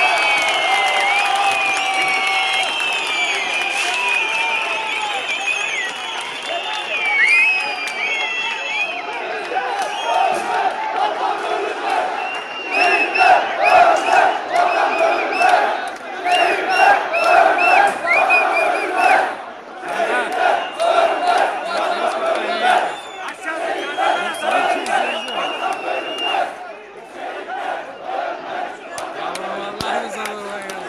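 A large street crowd shouting, with many high yells over one another at first. Rhythmic chanting swells in the middle, then breaks up into looser shouting and cheering.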